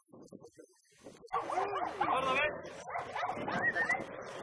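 Dogs barking and yelping in quick, overlapping bursts, starting a little over a second in, with people's voices mixed in.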